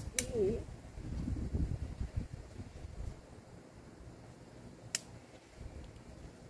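Two sharp snips of hand pruning shears cutting stems on a garden vine: one just after the start and one about five seconds in, over a low rumble.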